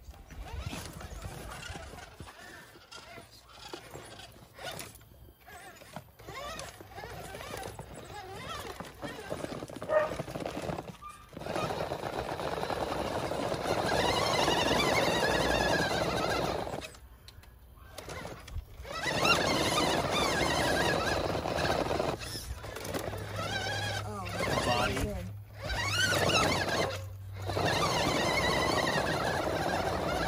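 Custom six-wheel-drive RC tow truck's electric motor and gear drivetrain whining as it crawls over rocks. The whine comes in stretches a few seconds long, rising and falling in pitch with the throttle and broken by short pauses.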